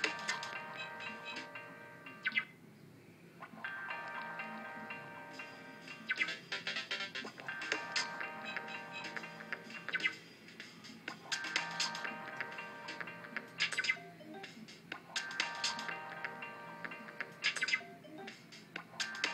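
Loop-based music played by the Mixdex Lite sequencer on an iPad: repeating phrases of sustained chords with short sharp hits, dropping out briefly a few times.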